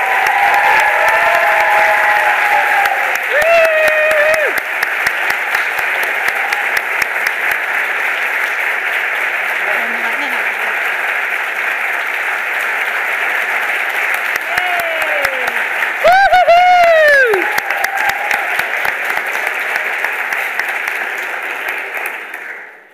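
Sustained audience applause, with voices calling out over it twice, loudest about sixteen seconds in. The clapping dies away at the very end.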